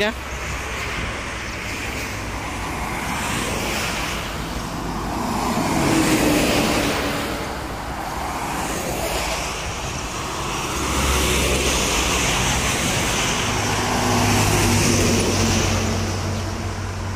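Highway traffic passing close by at speed: tyre and engine noise swells and fades as cars, buses and trucks go past, loudest about six seconds in and again over the last few seconds. A deep steady engine drone from a heavy vehicle runs under the later part.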